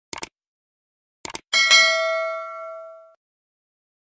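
Subscribe-button sound effect: a quick double mouse click, another click pair about a second later, then at once a bell ding that rings at one pitch and fades out over about a second and a half.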